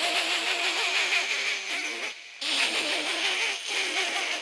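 A man performing an exaggerated, drawn-out laugh into a microphone: a breathy, wavering vocal sound held in long stretches, broken by a short pause about two seconds in.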